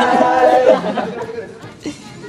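A group of teenage boys laughing and chattering together, dying down over the two seconds. There is a brief knock near the end.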